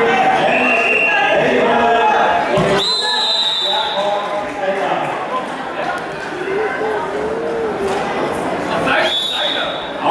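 Referee's whistle blown twice in a large, echoing sports hall: a blast of about a second and a half about three seconds in, stopping the action on the ground, and a shorter one near the end restarting the bout from standing. Spectators talk and call out throughout.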